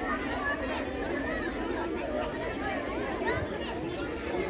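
Chatter of many children's voices at once, an overlapping babble in which no single speaker stands out.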